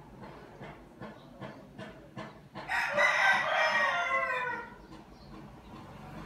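An animal call in the background: one long cry of about two seconds, falling in pitch toward its end, after a few faint ticks.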